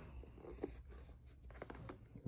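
Faint handling noise: soft rustling and a few small clicks about half a second in and again near the end, as the canvas sneaker is turned in hand close to the microphone.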